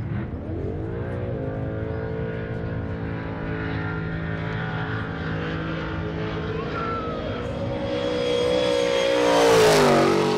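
V8 engine of an HSV sedan doing a burnout: the revs climb in about the first second, then are held steady at high rpm while the rear tyres spin and smoke. Near the end it gets louder with a rising hiss of tyre noise, then the revs drop away.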